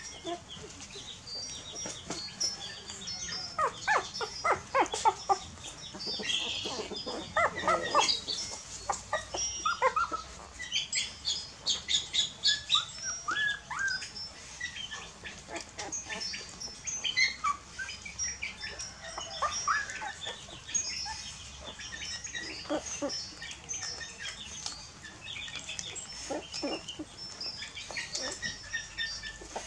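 A litter of young puppies nursing from their mother: rapid suckling noises and small squeaks, busiest in the first half. Short, high chirps of small birds run steadily behind them.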